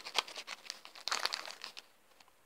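Clear plastic bag of dried fly agaric mushroom caps crinkling as it is handled: a run of irregular crackles that dies away near the end.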